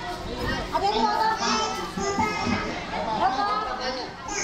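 Several people talking, not clearly, over background music.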